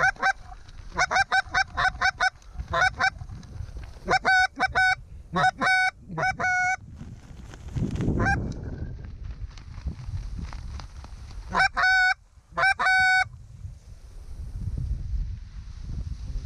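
Canada goose honks and clucks: volleys of short, clear notes in quick runs, with a few longer drawn-out honks, coming every second or two with brief gaps.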